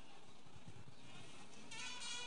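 Faint steady hall noise, then near the end a buzzing, reedy wind instrument starts playing a held note.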